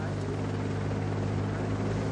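Steady low mechanical drone of race-coverage motors, the TV helicopter and camera motorbikes, under a broad haze of road and wind noise.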